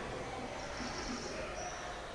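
Marker squeaking on a whiteboard as a word is written: two faint, high-pitched squeaks, the first about half a second in and a shorter one about a second later, over a steady hiss.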